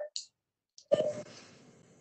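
Brief clicks and a short faint voice sound over a video-call microphone. The voice sound comes about a second in and trails off.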